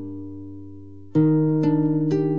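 Instrumental acoustic guitar music: a chord rings and fades, then a new chord is plucked about a second in and its notes keep sounding.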